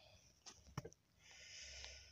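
Near silence while the camera is moved: a couple of faint clicks, then a soft hiss in the second half.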